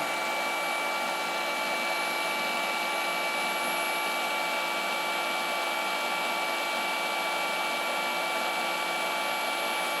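Two cordless rotary polishers, a Hercules 20V brushless and a Flex, running steadily with no load on the bench. Their motors and cooling fans make a constant hum with a steady high whine.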